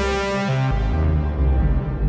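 Synth lead loop with Microcosm pedal effects playing over sustained low notes; the low note changes about two thirds of a second in.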